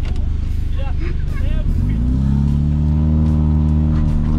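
Jaguar F-Type's engine idling, then revving up about two seconds in and holding steady at higher revs, as launch control holds the engine against the brake before a standing start.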